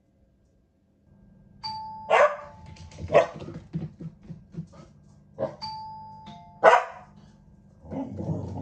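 An electronic doorbell chime rings twice, about one and a half and five and a half seconds in. A border collie barks loudly each time it sounds, with a few shorter barks in between. This is the dog's habit of barking at the door chime.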